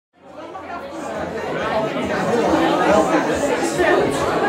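Audience chatter: many voices talking at once, fading in from silence over the first second or so.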